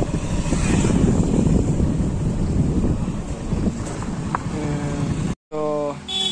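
Wind buffeting the phone's microphone on a moving motorcycle, over a steady low rumble of engine and road. A brief voice comes in near the end, and the sound cuts off suddenly.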